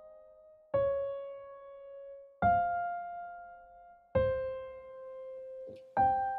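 Piano playing a slow right-hand phrase. Three notes or note pairs are struck about 1.7 seconds apart, and each is left to ring and fade before the next.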